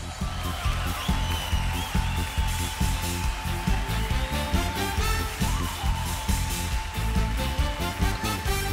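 Live trot band playing an upbeat instrumental intro: a steady drum and bass beat with keyboards, and a long held note over it from about a second in.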